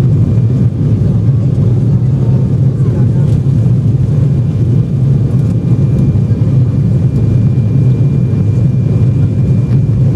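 Steady cabin noise of an Embraer E195 airliner climbing after takeoff: its General Electric CF34 turbofans and the airflow make a low, even roar, with a faint thin whine above it.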